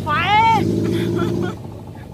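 A vehicle engine running steadily, which drops away abruptly about one and a half seconds in.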